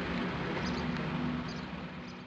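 Water pouring steadily from a drain outlet into a dug pit, a constant rushing noise with a low steady hum underneath, growing a little quieter near the end. The water runs in large volume, which the reporter suspects comes from a broken pipe.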